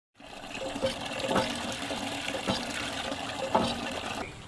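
Water gushing steadily from a hand pump's spout into a plastic bucket, with a few sharp knocks along the way.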